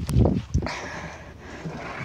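A dull low thump, then a sharp knock about half a second in: a plastic water bottle tossed in a bottle flip and hitting the ground without landing upright.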